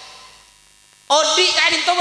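Faint, steady mains hum from a public-address microphone system in a pause of about a second, then a man's amplified voice starts abruptly and loudly.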